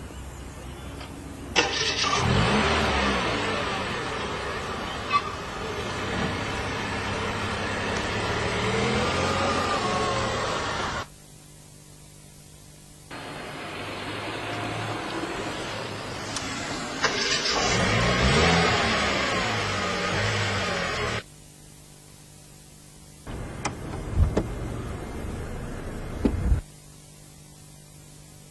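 A car engine revving, its pitch rising and falling, in sections that start and stop abruptly, with quieter engine running between them.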